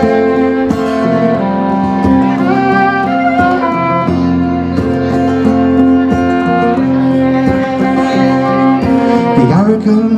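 Live acoustic folk band playing an instrumental introduction: acoustic guitars strumming chords under a fiddle carrying the melody in long held notes, some sliding between pitches.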